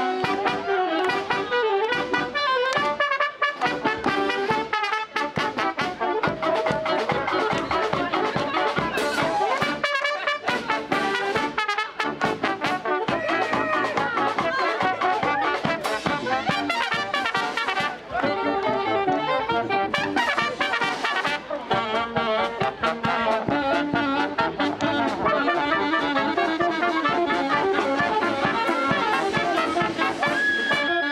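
Charanga brass band playing a medley live: trumpets, trombones, saxophones and sousaphone over a bass drum beat.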